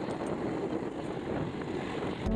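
A motorbike running steadily along a road: a rushing mix of engine, tyre and wind noise.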